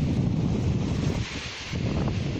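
Wind buffeting the microphone over small sea waves washing onto a sandy shore; a little over a second in the wind eases and the hiss of a wave running up the beach comes through.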